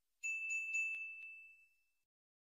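Notification-bell sound effect: a high, bright bell dinged about five times in quick succession, then left ringing and fading away.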